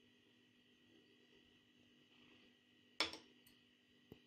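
Near silence, then one sharp metallic clink about three seconds in, as a small steel bowl is lifted out of a cooking pot.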